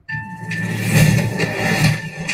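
Movie trailer soundtrack starting suddenly: music with an engine running under it, played back from a computer.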